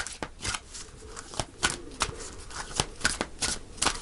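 A deck of tarot cards being shuffled by hand: a run of short, irregular flicks and slaps of card against card, several a second.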